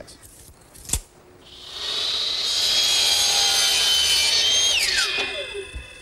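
Power miter saw cutting wooden picture-frame molding at a 45-degree angle. The motor comes up to speed and runs through the cut with a steady high whine, then winds down with a falling whine near the end. A sharp click comes about a second in.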